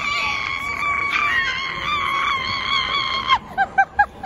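A woman screaming with excitement: one long, high scream held for about three seconds, then a few short squeals near the end.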